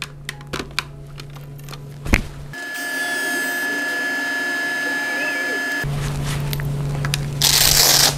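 Blood pressure monitor session: a few light clicks, then about three seconds of an edited-in stretch of steady music-like tones. Near the end comes a short loud rasp as the upper-arm blood pressure cuff is pulled open.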